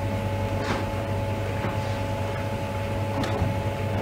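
Steady low electrical hum and room noise picked up by the microphones, with two faint steady tones above it and a couple of soft clicks, about a second in and again near the end.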